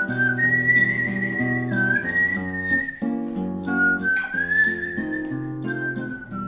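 Instrumental break of a song: a high, pure whistled melody with slight wavering carries the tune over acoustic guitar accompaniment.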